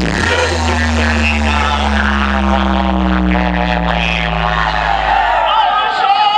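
Dance music played loud through a DJ truck's large speaker stacks. The beat drops out and a long, deep bass drone holds for about five seconds, with slowly falling tones above it, then cuts off near the end.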